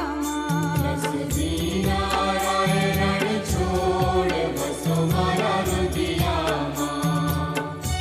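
Gujarati devotional aarti song: a singer with instrumental accompaniment over a repeating bass line.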